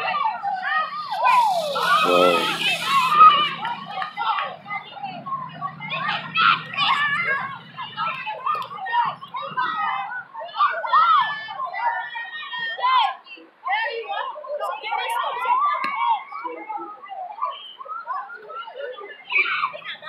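Children's voices at play, calling out and chattering without a break, with a brief hiss about two seconds in.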